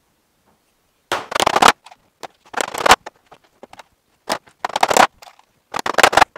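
Hammer driving a two-inch nail through a thin metal roof sheet into timber, in about five short clusters of sharp blows after a quiet first second.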